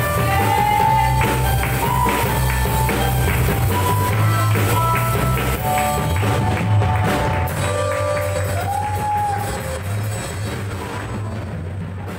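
Live worship band: singers holding sung notes over keyboard, electric guitar and drum kit, the music fading out over the last few seconds.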